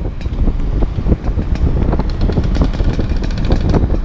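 Heavy wind buffeting on the microphone of a camera riding on a moving scooter, gusting unevenly, with the scooter's engine running underneath.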